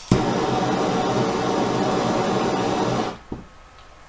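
Handheld gas torch burning with a steady, loud hiss for about three seconds, then shut off abruptly, followed by a single click. Its flame is bridging the furnace's flame rod to the pilot housing to simulate a pilot flame for the flame-proving test.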